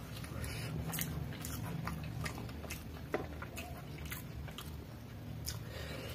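Close-miked chewing of noodles: wet mouth clicks and smacks. A single sharper click sounds about three seconds in, and a low steady hum runs underneath.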